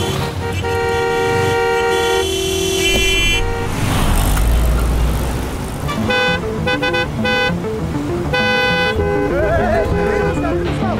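Several car horns honking in traffic: long blasts of two pitches held for over a second early on, a low engine rumble midway, then a run of short beeps and another blast near the end.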